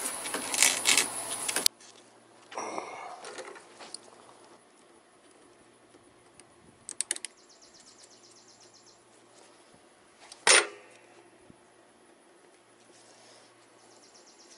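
Outdoor insect buzz for the first couple of seconds, then quiet hand work on a riding mower's fuel line and filter: a brief rustle, a few small clinks about seven seconds in, and one sharp click about ten and a half seconds in.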